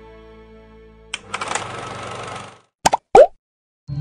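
Soft background music fading out, then a hissing swell lasting about a second and a half, followed by two short, loud pops with a quick pitch bend, about a third of a second apart; after a brief silence new music starts right at the end. These are the sound effects of an animated logo outro.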